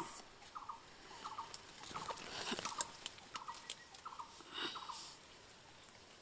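Faint rustling and crackling of leaves and twigs as someone pushes through lemon bushes. Under it, an animal's short chirping call repeats in small groups about once a second.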